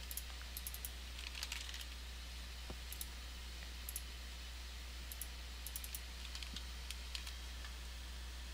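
Scattered light mouse clicks and computer keystrokes, irregular and spread throughout, over a steady low hum.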